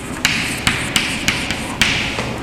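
Chalk writing on a chalkboard: about five sharp taps as the chalk strikes the board, with scratchy strokes between them.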